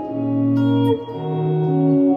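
Clean electric guitar sounding sustained barred chords: one chord rings, then a new chord is played about a second in, part of a B-flat minor chord move in a modulating progression.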